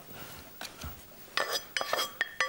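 Stainless-steel pots and a pan knocking and clinking together as they are handled, with a few sharp metallic clinks that ring briefly in the second half.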